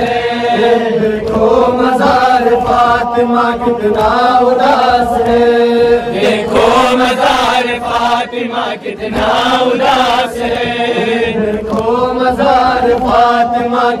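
Male voices chanting an Urdu noha, a Shia mourning lament, in long drawn-out melodic lines without a break.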